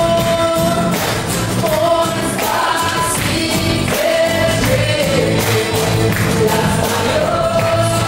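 Live band performing a Christian worship song: a man and a woman singing long held lines over strummed acoustic guitar and a steady hand-drum beat.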